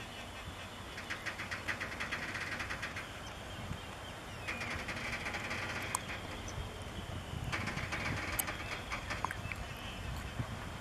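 Freight train of flatcars rolling slowly during shunting, with a steady low rumble. A sustained high squeal runs through the middle, and bursts of rapid clicking come about a second in and again near the end.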